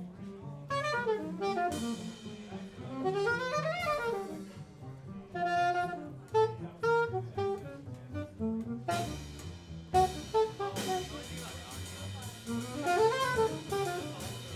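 Live jazz trio: saxophone improvising a melodic line with upward and downward runs, over plucked upright double bass and drum kit. The cymbals grow louder about nine seconds in.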